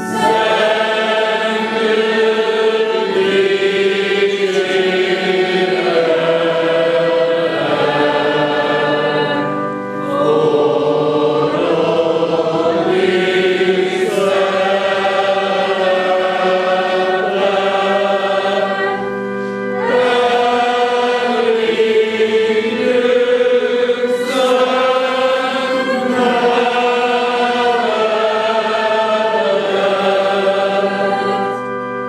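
Men's choir singing a Hungarian hymn in slow, sustained harmony, the phrases broken by short breaths about ten and twenty seconds in.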